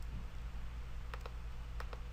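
Computer mouse clicking twice, each click a quick pair of sharp ticks, about a second in and near the end, over a steady low hum. The clicks toggle Lightroom's Split Toning panel on and off to compare before and after.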